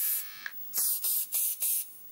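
Aerosol Clippercide clipper spray hissing onto a hair clipper blade: a longer spray that stops about a quarter second in, then four short bursts in quick succession.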